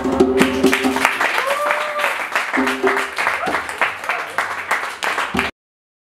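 Live acoustic music: a nyatiti lyre's plucked strings over quick, dense percussion, cutting off abruptly about five and a half seconds in.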